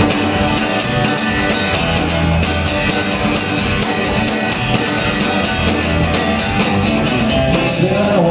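Live folk-rock band playing: a strummed acoustic guitar and a drum kit keep a steady beat, with an electric guitar in the mix.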